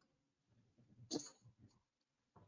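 Near silence: room tone, with one short, faint sound about a second in.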